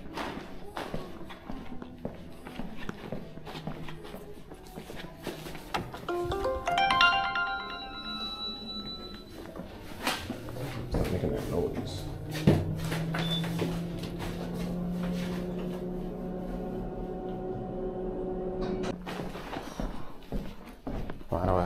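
Footsteps and handling clicks through a building lobby, then a multi-note ringing chime of the kind an elevator gives on arrival, followed by the steady hum of an elevator car while it travels between floors.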